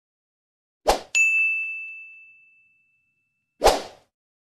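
Edited-in sound effects of a subscribe-button animation. A short whoosh comes about a second in, then a bright bell-like ding that rings out and fades over about a second and a half, and another short whoosh near the end.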